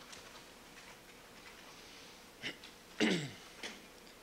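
Quiet room tone, then a person clearing their throat about three seconds in: a short rasp just before, and a half-second vocal sound falling in pitch.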